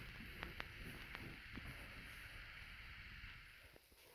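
Quiet room tone: a faint steady hiss with a few soft ticks in the first two seconds.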